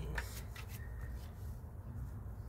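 Tarot cards being handled and drawn from the deck: a few light clicks near the start, then soft rubbing over a steady low rumble.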